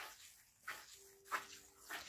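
Fingers sweeping through fine sand on a plate: a few short, faint swishes, with a faint steady whine for about a second in the second half.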